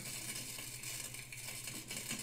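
Faint, steady crackling hiss of a wall electrical outlet arcing and burning at a frayed, still-live wire.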